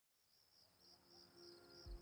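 Faint crickets chirping in an even pulsing rhythm, about three chirps a second, fading in from silence. Soft, steady music tones come in about a second in, with a low thump just before the end.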